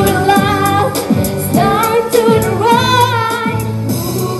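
A young girl singing a pop song into a handheld microphone over a backing track with a steady beat.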